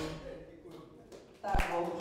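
Quiet hall sound, then a sudden thud about one and a half seconds in, as a man calls out "Oh, yeah".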